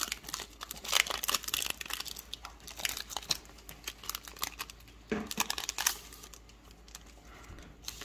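Foil wrapper of a basketball trading-card pack crinkling and tearing as it is ripped open by hand. The crackling is dense for the first few seconds, comes again briefly about five seconds in, then dies down.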